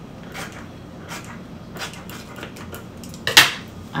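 Kitchen scissors snipping through a banana leaf: a few short, sharp crisp cuts spaced out over the seconds. About three and a half seconds in, one louder, longer noise.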